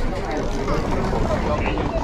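People talking around a ticket machine over a steady low engine rumble.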